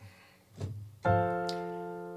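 Piano playing an F major chord with F in the bass, struck about a second in and left to ring, slowly dying away.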